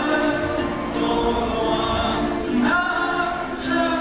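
A live band playing a slow song: a male voice singing held notes over ukulele and accordion, in a full, echoing concert-hall sound.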